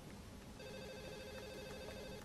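A faint telephone ring: a steady electronic tone of several pitches held together, starting about half a second in.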